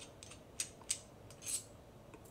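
Light metallic clicks and a brief rub from the gold-plated Merkur 34G two-piece double-edge safety razor as it is handled and unscrewed into its head and handle. There are three or four short clicks, then a soft scrape about one and a half seconds in.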